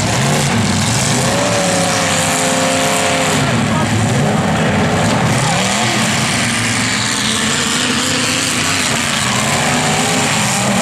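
Engines of several 1980s demolition derby cars running and revving together, their pitch rising and falling, loud and continuous.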